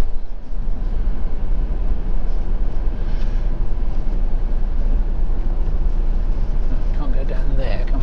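Motorhome's engine and road noise heard inside the cab while driving slowly, a steady low rumble.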